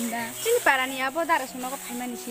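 Young women's voices talking, with a bright, wavering laugh-like burst of voice about half a second in.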